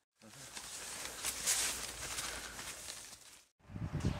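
Soft footsteps and rustling of strawberry plants as someone walks along a row, with a few light crackles; the sound cuts off suddenly shortly before the end.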